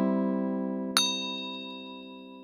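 An acoustic guitar chord ringing and fading away, with a short bright bell-like ding about a second in: a notification-bell chime sound effect.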